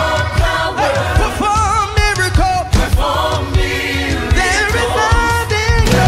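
Gospel song with choir voices singing long, wavering notes over a band with a strong bass line.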